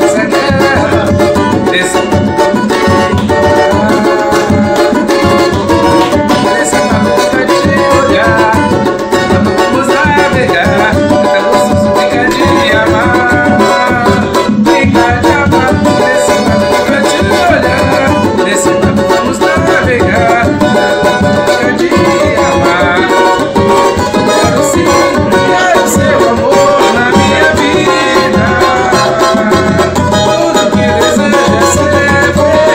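Brazilian pagode banjo (cavaco-banjo) strummed in a steady, fast samba-pagode rhythm, a repicada, with a tall metal-shelled hand drum beating along. A voice sings over it at times.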